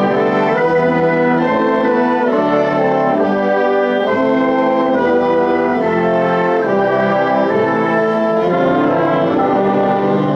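Student orchestra playing a slow passage of sustained chords that change every second or so.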